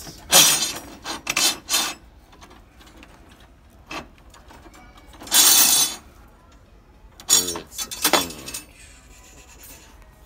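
Steel threaded rods clinking and scraping against each other and the metal bin as they are sorted through by hand, in several short bursts with a single click in between.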